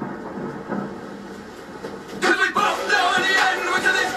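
Rap video soundtrack playing through a TV: a quieter stretch of low rumbling like a storm, then about two seconds in a man's voice comes in over music.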